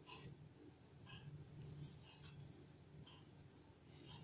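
Near silence: room tone with a faint, steady high-pitched whine, and a few faint soft ticks from a crochet hook working yarn.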